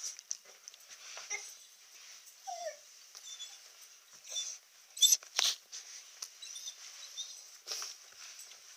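Dog whining and whimpering in short bursts, impatient to be taken for a walk as the owner reads it. A brief whine comes about two and a half seconds in, and a few sharp clicks about five seconds in are the loudest sounds.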